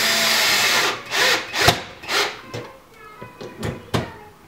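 Cordless drill-driver driving fixing screws into a chipboard kitchen-cabinet wall to secure a lift-mechanism mounting plate. One loud run lasts about a second, then come three short bursts as the screw is snugged down. A sharp click follows near the end.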